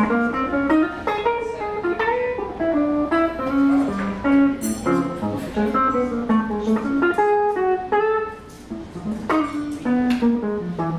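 Hollow-body archtop electric guitar playing a jazz solo of quick picked melodic lines, with no saxophone or voice.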